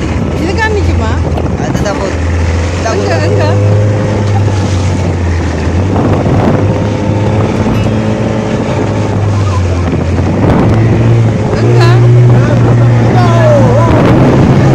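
Motorboat engine running steadily under wind and water noise, its pitch stepping up a little about eleven seconds in as it speeds up. Voices come over it briefly near the start and near the end.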